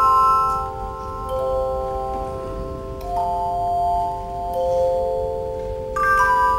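A handchime ensemble playing a slow passage: aluminium handchimes ringing in sustained chords, with a new note entering every second or two and each note ringing on long after it sounds.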